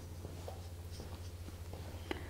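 Faint, soft scratching of a size 6 round watercolor brush being stroked across watercolor paper, over a steady low hum.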